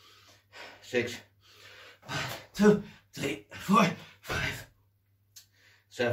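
A man breathing hard and fast, gasping breaths coming about once or twice a second, some of them voiced, winded from a long set of burpees. A faint steady hum runs underneath.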